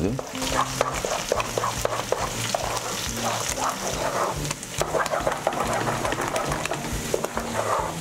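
Wooden spoon stirring thick green-corn angu in a heavy aluminium pot: repeated scrapes and wet slaps as the stiffening corn dough is worked against the pot. The angu is thickening and starting to set on the bottom but is not yet cooked.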